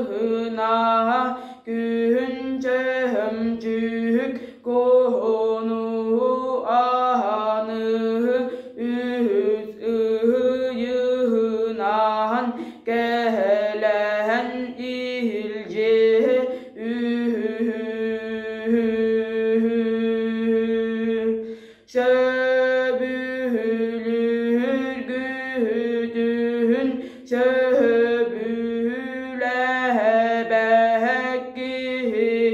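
A boy singing Yakut toyuk solo and unaccompanied: a long-held, chant-like line with quick wavering ornaments on the notes. He breaks off for short breaths about two seconds in, again near four and a half seconds, and once more about two-thirds of the way through.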